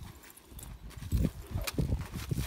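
A saddled horse's hooves stepping on the soft dirt of an arena as it is driven round. There are several dull, irregular thuds, starting about a second in.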